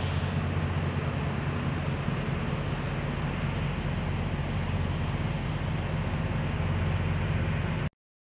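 Steady low hum of an idling diesel engine with an even hiss over it, unchanging throughout; it cuts off abruptly near the end.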